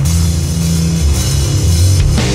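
Stoner doom metal played by a full band: heavily distorted guitar and bass holding low notes over drum kit and cymbals.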